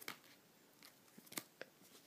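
Near silence broken by a few faint, short clicks, three or so in the second half, from sleeved trading cards being handled and set down on a table.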